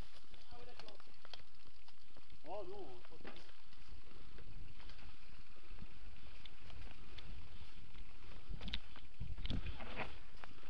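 Mountain bike ridden along a dirt forest trail, heard from a camera on the rider: steady wind rumble on the microphone with scattered rattles and clicks from the bike over the rough ground, growing a little stronger near the end.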